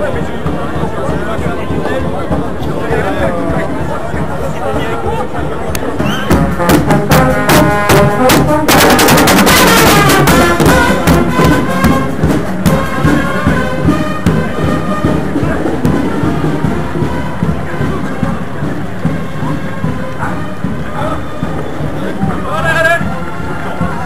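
A large crowd of runners at a road-race start, with chatter and music over a loudspeaker. About six seconds in the noise swells into a loud surge of crowd noise with clapping as the race is started, peaking around nine to ten seconds in. It then settles into the steady sound of the field moving off.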